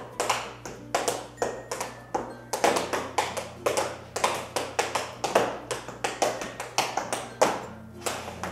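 Tap shoes striking interlocking polypropylene dance tiles with a vinyl top, a quick, uneven rhythm of sharp taps, several a second.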